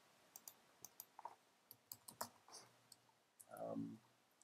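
Faint, irregular clicking of typing on a computer keyboard, a dozen or so quick clicks in uneven bursts.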